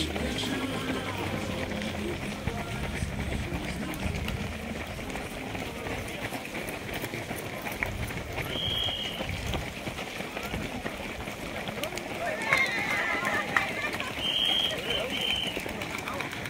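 Footsteps of a large pack of runners on a paved road as they stream past, mixed with indistinct voices. A short high beep sounds about halfway, and two more near the end.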